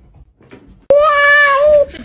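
Domestic cat giving one loud, drawn-out meow of about a second, starting abruptly about halfway in, with a slight waver in pitch. Faint scuffling comes before it.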